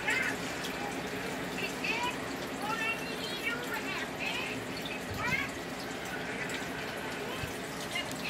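Fish-tank air bubbler running: a steady bubbling, trickling water sound. A few short, rising high-pitched chirps sound over it, near the start, around two and three seconds in, and about five seconds in.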